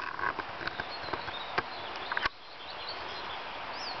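Footsteps and camera handling on a woodland path, a series of irregular knocks and clicks that stop suddenly about two seconds in. After that there is a steady outdoor hiss with a few faint high bird chirps.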